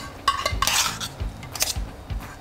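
Metal cookware clinking and scraping as food is served onto plates: tongs and pans knocking together. A few sharp clinks come near the start, a scrape about halfway through, and another clink near the end.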